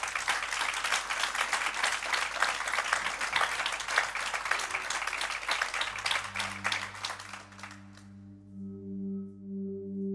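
Audience applause and clapping, dying away over the first eight seconds or so. About six seconds in, a low sustained musical drone with a slow pulse fades in and grows.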